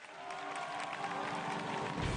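Audience applause swelling, with walk-on music faintly coming in underneath.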